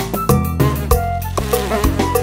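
Background music with percussion and bass, with a buzzing insect sound effect laid over it from about half a second in.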